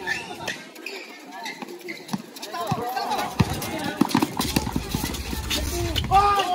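Spectators' voices talking in the background of a basketball game on an outdoor concrete court, with short knocks and thuds of play (ball bounces and players' footsteps) coming thick and fast in the second half.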